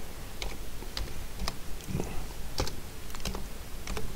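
Slow typing on a computer keyboard: about half a dozen separate keystrokes, roughly one every half second.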